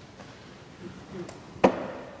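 Soft footsteps, then one sharp wooden knock with a short echo near the end, as a reader arrives at a church lectern.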